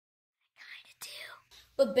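A person's faint breathy whisper in two short puffs between spoken sentences, with a spoken word starting near the end.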